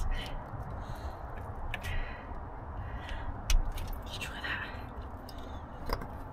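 Rubber spark plug boot being pushed down onto a plug on an engine: faint handling and rubbing, with a sharp click about three and a half seconds in, over a low rumble.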